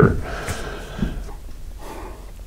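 A man breathing out audibly through nose and mouth during a pause in his talk, with a faint knock about a second in.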